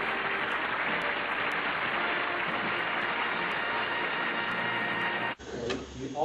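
Steady hiss and hum from the worn soundtrack of an old black-and-white TV clip, with no clear speech or music, cutting off sharply about five seconds in.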